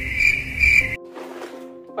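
Edited-in cricket chirping sound effect: a loud, high trill pulsing about twice a second, the usual 'crickets' gag for an awkward silence. It cuts off abruptly about a second in, leaving only a faint low hum.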